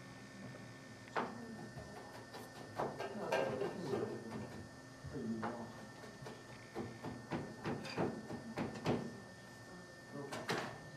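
Irregular knocks and clatter of kitchen utensils and containers being handled, with faint voices in between.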